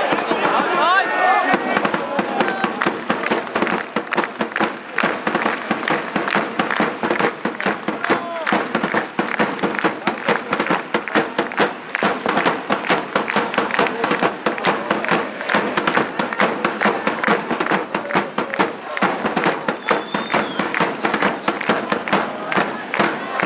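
Ice hockey crowd in the arena stands chanting and cheering over a fast, steady beat of drums or claps, about four to five strokes a second.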